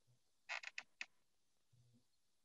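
Near silence, broken by a quick cluster of faint short clicks about half a second in and one more click about a second in.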